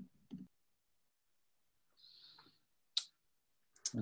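Quiet room tone on a video-call audio feed, broken by a faint hiss about two seconds in and a single sharp click about a second later.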